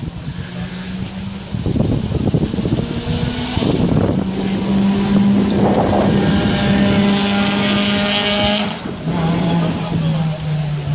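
Rally car engine at high revs as the car approaches and speeds past, building in loudness with rough surges. Its pitch drops suddenly near the end as it pulls away.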